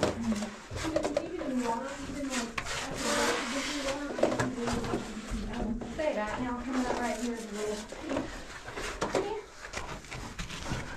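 Voices talking, with scrapes and knocks from cavers moving through a narrow rock passage; there is a brief rush of scraping noise about three seconds in.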